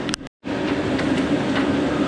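Diesel engine of heavy logging machinery running steadily at an even pitch. The sound cuts out for a moment near the start, then resumes.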